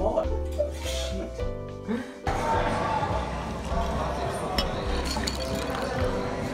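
Background music for about two seconds, then an abrupt cut to restaurant noise: a haze of background chatter with a few sharp clinks of glass and dishes.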